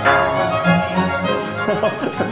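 Orchestral classical music with bowed strings. A new chord enters at the start over a bass line that moves in held notes.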